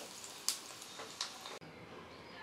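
Faint sizzle of hot frying oil in a small pan as fried vadam are lifted out on a steel slotted spoon, with two light clicks. The sound drops away suddenly about one and a half seconds in.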